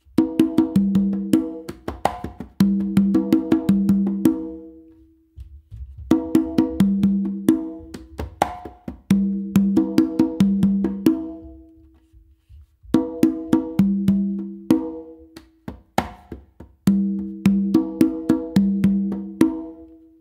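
Meinl congas played by hand in a salsa tumbao. Ringing open tones on the conga and the lower tumba mix with sharp closed slaps and soft ghost notes, in repeated phrases with brief breaks between them.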